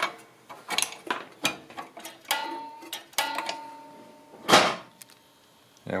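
Light clicks and metallic rattles of a small engine's carburettor throttle lever and linkage being worked by hand, with a thin squeak in the middle and a short rushing noise near the end.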